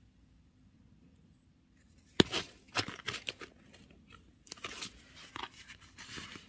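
Sticker sheets and paper cards handled: a sharp click a little over two seconds in, then uneven bursts of rustling and crinkling.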